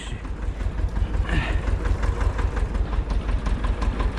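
Tractor engine idling steadily with an even, rapid low pulse.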